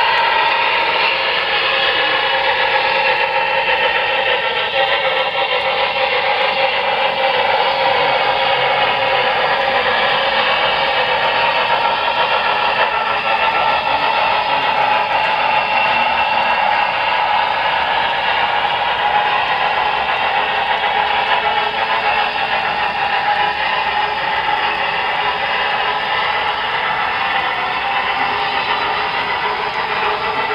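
Model freight train running along a layout's track: a steady clatter and whir of the cars' wheels on the rails, easing slightly near the end.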